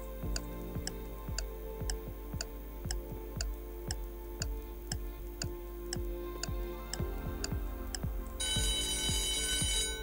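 A countdown-timer sound effect over background music: a clock ticking about twice a second. About eight and a half seconds in, a high alarm-like ring joins it, signalling that time is up as the timer reaches zero.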